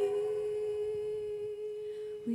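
A woman's voice holding one steady, nearly pure note without accompaniment, slowly getting softer.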